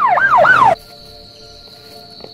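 Police siren in a fast yelp, its pitch sweeping up and down about three times a second, cut off abruptly less than a second in. Faint steady cricket chirring carries on after it.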